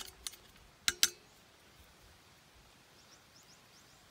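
Four sharp metallic clicks of a screwdriver tip knocking against the metal terminal box and wiring of an electric water pump, the last two, close together about a second in, the loudest and ringing briefly.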